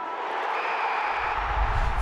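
Intro sound effect: a noisy whoosh that swells gradually, with a few faint steady tones in it. About halfway through, a low rumble of outdoor ambience joins it.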